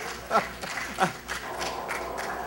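Laughter in a large hall trailing off, with two short laughs about a third of a second and a second in, over a low room murmur.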